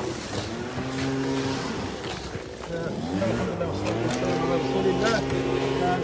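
Lawnmower engine running steadily, its pitch shifting a little, with voices in the background.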